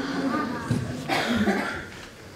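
A person coughing, with a voice heard faintly around it; the cough comes a little past the middle.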